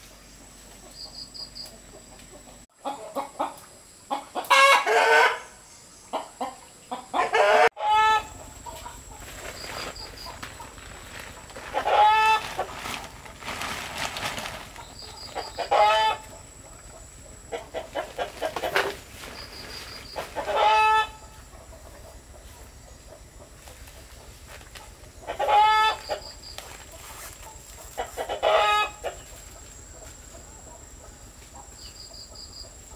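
Chickens calling over and over. Each call is a quick run of short clucking notes ending in a louder drawn-out call, repeated every few seconds.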